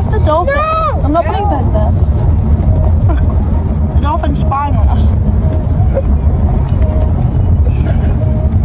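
Steady low rumble of a car heard from inside the cabin, with a girl's high, swooping voice sounds twice, about half a second in and again around four seconds.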